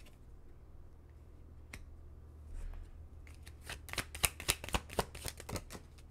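Tarot cards being shuffled and handled. It is quiet at first, then a quick run of crisp card snaps and flicks comes in the second half.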